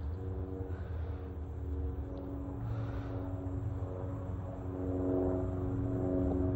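A steady hum of several held tones over a low rumble, swelling slightly near the end.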